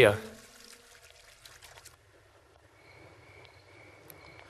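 Faint trickle of water from a garden hose on wet paving, fading out about two seconds in; a faint steady high tone follows.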